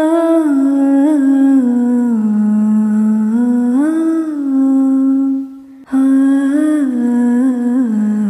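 A woman's voice humming the nasheed melody unaccompanied, in long gliding phrases, with a short breath break just before six seconds in.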